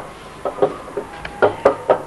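A quick, uneven series of about six sharp knocks or taps.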